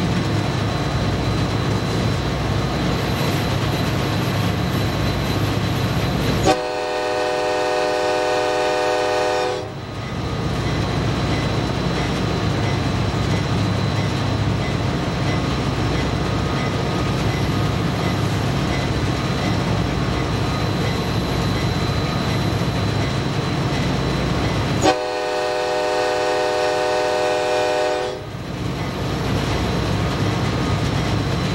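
Diesel locomotive rolling along the track with a steady low engine rumble and rail noise, broken twice by a long blast of its multi-note air horn, each about three seconds, the second near the end.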